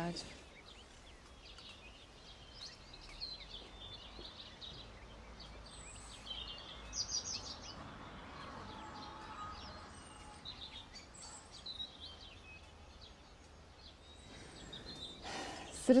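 Small birds chirping and singing in short, high calls scattered over a quiet outdoor background.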